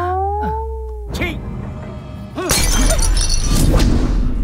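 Film background score with comic sound effects: a pitched tone slides upward at the start, short swooping tones follow, and a loud, dense burst of music takes over about halfway through.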